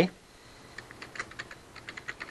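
Computer keyboard typing: scattered light keystrokes that begin under a second in.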